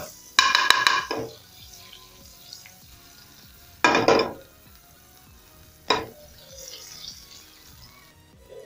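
Metal spoon stirring and scraping through butter melting in hot oil in a non-stick pan, in three short bursts with clicks of the spoon on the pan: about half a second in, around four seconds in, and briefly near six seconds. The butter sizzles faintly in between.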